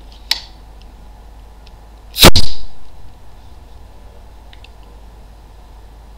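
A modded Nerf Titan rocket blaster firing: one very loud, sharp blast of released air about two seconds in, after a light click near the start.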